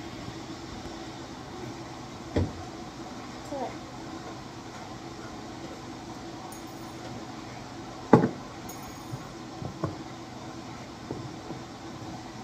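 A few sharp knocks from objects being handled and set down on a tabletop. The loudest is about eight seconds in, with smaller ones near two and a half and ten seconds. A steady low hum runs underneath.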